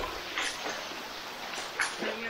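Canyon river water rushing steadily, with two short high yelps, about half a second in and again near the end.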